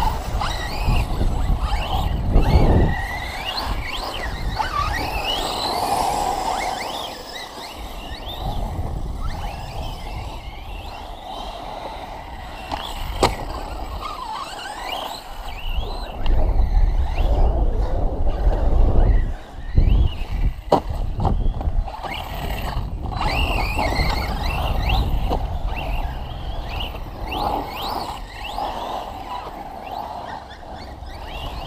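Electric brushless RC cars running on a dirt track, their motors whining up and down in pitch with the throttle. Deep gusty rumbling, wind on the microphone, comes and goes, and there are two sharp knocks, about 13 and 20 seconds in.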